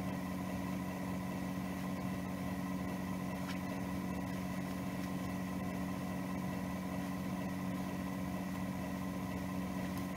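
A steady low hum with a few fixed pitches that does not change, and one faint click about three and a half seconds in.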